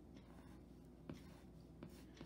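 Faint scratching of a graphite pencil on drawing paper, hatching short strokes, with a couple of light ticks.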